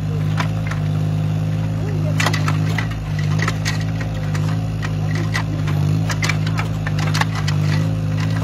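Yanmar mini excavator's small diesel engine running steadily while digging, with scattered sharp clanks and knocks from the bucket and arm working through soil.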